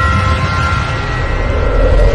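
Cinematic logo-intro sound effect: a deep, loud rumble under ringing tones that fade away, with a swell building near the end.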